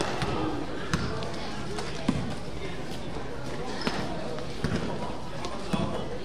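Basketball bouncing on a gym floor: five or so separate, unevenly spaced bounces, with people's voices around it.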